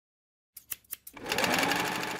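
Sewing machine: a few separate stitch clicks, then the machine running fast in a dense, steady stitching rattle.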